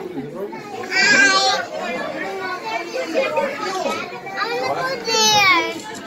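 High-pitched calls from young children, one about a second in and a louder one near the end, over a steady background of other voices.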